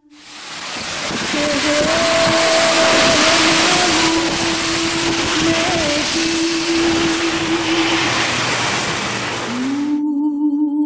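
Loud, steady rushing noise of cycling on a wet road in the rain: wind on the microphone and tyre spray, fading in over the first second. A thin steady low hum runs underneath.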